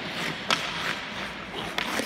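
Hockey skate blades scraping across rink ice, with a few sharp knocks of a hockey stick, the loudest about half a second in.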